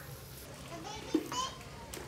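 Young children's high voices calling out as they play, with a short sharp thud a little past halfway.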